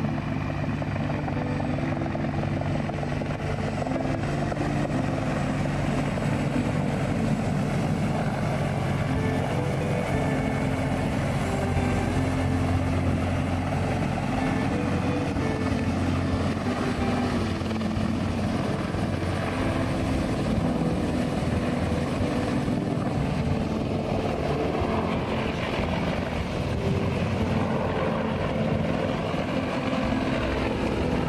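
Large multi-blade military heavy-lift helicopter of the CH-53 type, flying low over the surf and setting down on a beach. Its rotor and turbines make a loud, steady din that does not let up.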